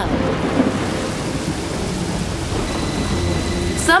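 Steady heavy rain with low rumbling thunder: a thunderstorm. A voice starts speaking right at the end.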